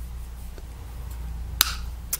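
Makeup being handled during application: a low steady rumble, a faint tick, then one sharp click about one and a half seconds in.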